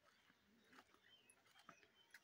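Near silence: faint outdoor background with a few soft ticks and faint short chirps.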